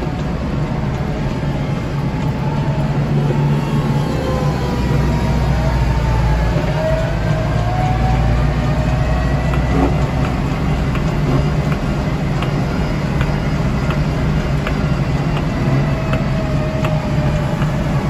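Kubota tractor's diesel engine running steadily with a front-mounted snowblower attached, with a faint whine that slides up and down in pitch.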